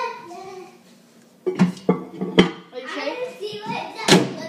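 Children talking, with a short lull and then three sharp knocks about halfway through as a bowl is handled.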